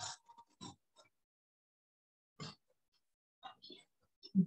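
Near silence, broken by a few faint, short squeaks and scratches of a marker writing on a whiteboard, the loudest about two and a half seconds in and a small cluster near the end.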